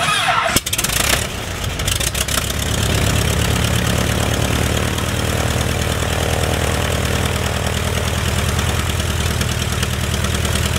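GP-4 light aircraft's piston engine starting: it catches with a loud burst, stumbles briefly about half a second in, runs unevenly for a couple of seconds, then settles into a steady idle by about three seconds in.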